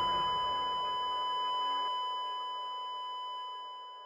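A steady high electronic beep, the long unbroken tone of a heart monitor flatlining, held over the fading tail of the music. It dies away towards the end.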